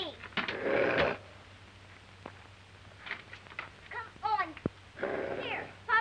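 Short, wavering, cat-like cries that bend up and down in pitch, with two rough, rasping bursts: one about half a second in and one about five seconds in.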